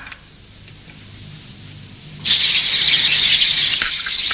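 A faint low hum, then about two seconds in a sudden, steady high chatter of birds chirping begins.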